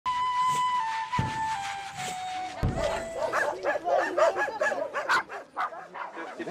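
A held musical tone stepping down in pitch over the first three seconds, with two low thuds. Then, from about three seconds in, a dog barking in many quick, repeated barks.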